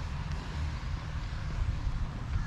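Steady outdoor background noise: a low rumble under an even hiss, with no single event standing out.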